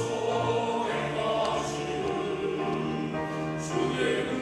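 A men's choir singing a sacred song in parts, holding long, sustained notes.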